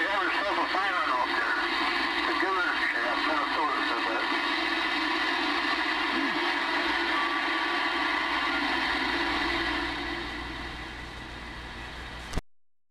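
Galaxy DX-2547 CB base station radio receiving on its speaker: steady static with warbling, garbled voices of other stations in the first few seconds, then plain hiss that drops in level near the end.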